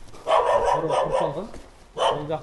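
A dog barking.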